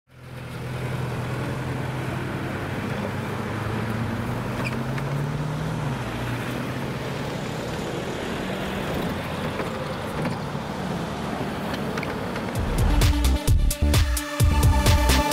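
A red midibus's engine running close by, its pitch rising about four to six seconds in as the bus pulls away from the stop. Electronic music with a beat starts near the end.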